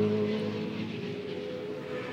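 Race-car engine noise from the circuit, a steady low drone that fades.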